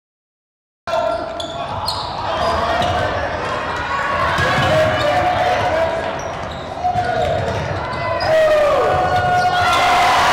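Live sound of a basketball game in a gym: the ball bouncing on the hardwood floor, short sneaker squeaks, and the voices of players and spectators. It begins about a second in after silence and grows louder near the end.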